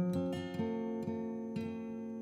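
Solo guitar: a few single notes picked over a chord that rings on and slowly fades.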